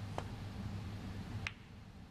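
Snooker cue tip striking the cue ball with a light click, then about a second and a quarter later a louder, sharper click as the cue ball hits the object ball up the table.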